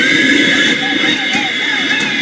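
Leaf blower running with a steady high whine, blowing hard at close range. A voice rises and falls faintly beneath it.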